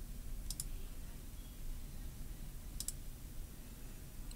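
Two computer mouse-button clicks, each a quick press-and-release double tick, about two seconds apart, over a faint low hum.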